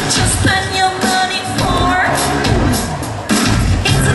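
Live rock/pop band playing an instrumental passage, with drum kit hits and keyboard over a steady beat, heard through the PA in a large hall.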